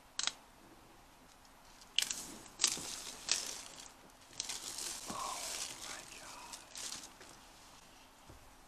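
Plastic shrink-wrap being torn off a laptop box by its pull tabs: three sharp rips about two to three seconds in, then a few seconds of crinkling film as it is pulled away.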